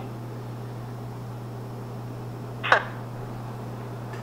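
A steady low hum with a faint hiss underneath, broken by one short falling chirp near the end.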